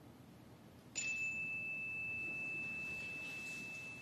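A small bell or chime struck once about a second in, ringing one clear high tone that holds and slowly fades, marking the end of a moment of silent reflection.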